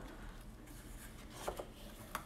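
Faint rubbing and scraping of a cardboard presentation box being opened: the lid is lifted off and the inner cover handled, with a soft tap about one and a half seconds in.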